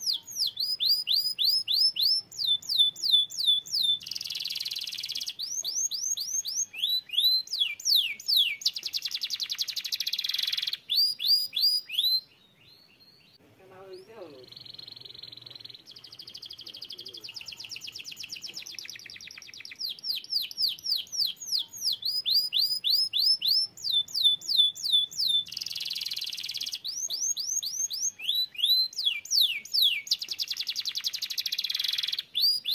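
Domestic canary singing: phrases of fast, repeated downward-sweeping whistled notes, alternating with very rapid trills. The song breaks off briefly about twelve seconds in, then resumes.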